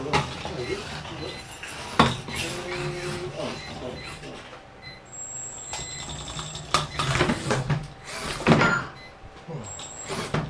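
Small radio-controlled combat robots knocking against each other and the arena walls, with sharp knocks about two seconds in and again near seven seconds, amid people talking and laughing.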